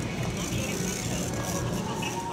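Plastic shopping cart rolling across a hard store floor: a steady rattling rumble from the wheels and basket.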